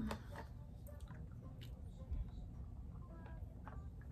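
Quiet room with a low steady hum, broken by a few faint scattered clicks and small handling noises.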